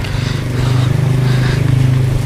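A small engine running steadily, a low hum with a fast, even pulse.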